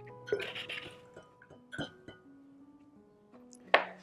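Soft background music of slow, held notes. Small handling noises sit over it: a brief rustle about half a second in and a sharp click near the end.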